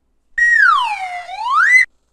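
A single whistle-like tone that slides down in pitch and then back up again, lasting about a second and a half.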